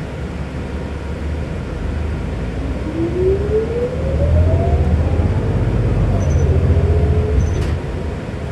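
Inside a New Flyer XD60 articulated diesel bus as it gathers speed: the drivetrain rumble grows louder, and a whine climbs in pitch for a couple of seconds, then holds at a steadier, lower note. A short click comes near the end.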